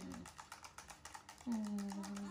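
Fast, even rattling clicks, about a dozen a second, as a baby milk bottle is shaken hard to mix the feed. A voice holds one steady low hum near the end.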